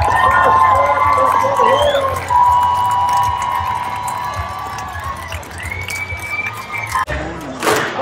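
Rodeo crowd cheering and whooping during a bucking bronc ride, mixed with music and a voice. The sound drops out briefly near the end and a sharp crack follows.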